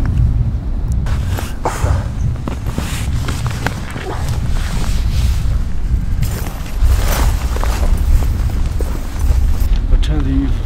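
Boots fitted with chain crampons stepping and crunching through thick snow, in irregular steps over a steady low rumble.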